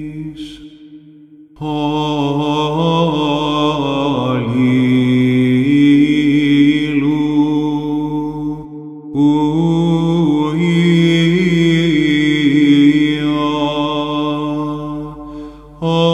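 Byzantine chant in plagal fourth mode: a solo male chanter sings a slow, ornamented melodic line over a held low drone (ison). He pauses for breath about a second in and briefly again about nine seconds in.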